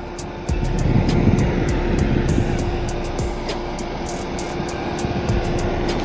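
Small 12 V exhaust fan running steadily, a continuous rush of air with a steady hum, over background music.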